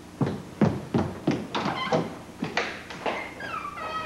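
Footsteps, about two or three a second, as someone walks to a door, with a creak that falls in pitch near the end.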